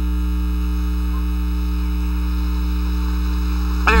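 Steady electrical mains hum with its overtones on an old broadcast tape's audio track, with faint hiss under it and no other sound rising above it.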